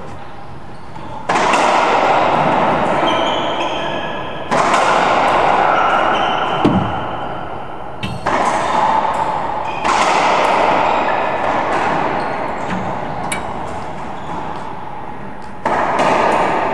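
Racquetball rally: the ball struck by racquets and hitting the court walls, each shot a sudden crack that rings on in a long echo in the enclosed court, about five shots a few seconds apart.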